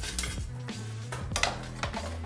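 A few separate clinks and knocks of a spatula against a stainless steel roasting pan as cherry tomatoes are tossed in it.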